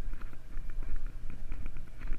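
Steady low rumble of wind and the boat, with faint irregular light clicks from a small conventional reel as a hooked fish is wound in.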